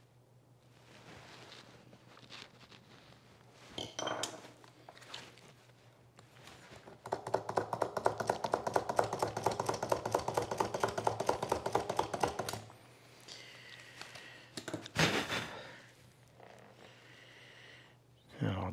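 A drill boring an eighth-inch hole through a small maple piece, a fast, even rattle lasting about five seconds, starting about seven seconds in. A few light taps and scrapes come before it, and a single knock follows a couple of seconds after it stops.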